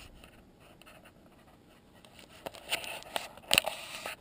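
Handling noises: quiet at first, then a few short scrapes and clicks in the second half, the loudest about three and a half seconds in.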